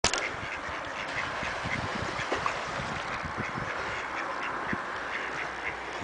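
Ducks on the canal water quacking, short calls scattered over a steady background noise.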